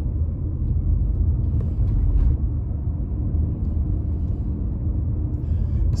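A car driving up a street, heard from inside the cabin: a steady low rumble of engine and road noise.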